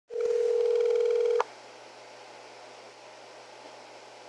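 Call-progress tone of an outgoing smartphone call heard over the speakerphone: one steady electronic tone for about a second and a half, then only faint line hiss.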